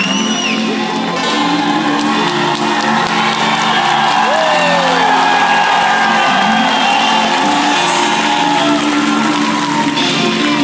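Rock band with an orchestra playing live in an arena, heard from among the audience, with the crowd cheering over the music and a whistle from the crowd right at the start.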